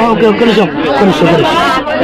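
Speech: several people talking over one another in lively chatter.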